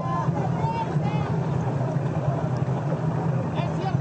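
Steady low drone of a boat's motor, with faint voices in the background early on.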